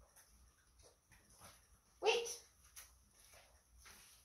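A small dog barks once, a short sudden bark about halfway through; otherwise only faint shuffling.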